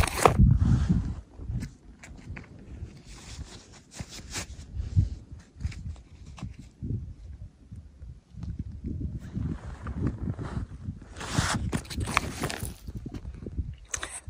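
Handling noise from a hand-held phone camera: irregular rustling and knocks as it is moved about close to the ground, with a burst of louder rustling near the end.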